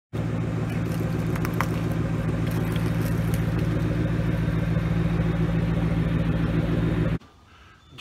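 Ford Mustang engine idling steadily, a low even rumble with no revving, cutting off abruptly about seven seconds in.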